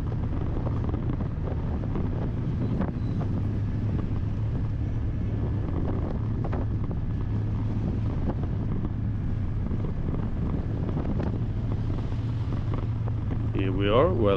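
A car driving steadily along a town road: a constant low engine and road hum that does not change through the stretch, with a few faint ticks.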